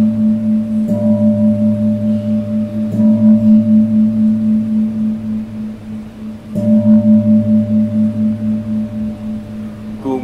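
A deep-toned bell struck three times, about one, three and six and a half seconds in. Each stroke rings on with a slow, pulsing hum that lasts until the next. The bell marks the elevation of the host at the consecration of the Mass.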